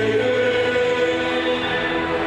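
A group of students singing together as a choir, holding long notes that change pitch in steps.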